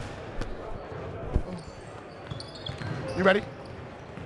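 Basketballs bouncing on a hardwood gym floor during warm-up: a few separate thuds, the loudest about a second and a half in.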